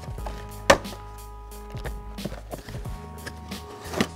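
Tape on a cardboard box being cut and scraped open with the edge of a plastic fingerboard obstacle: scattered sharp knocks and scrapes on the cardboard, the loudest about three-quarters of a second in. Background music plays underneath.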